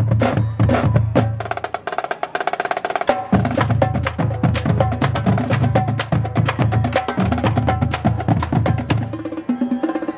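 Marching band drumline playing a cadence: regular bass drum hits under rapid snare and stick strokes. About two seconds in the bass drums drop out for a moment under a fast run of strokes, then come back in.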